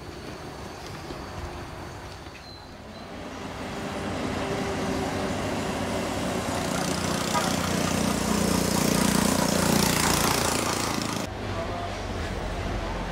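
Road traffic noise: a motor vehicle's running sound swells over several seconds to a peak near the end, then cuts off abruptly.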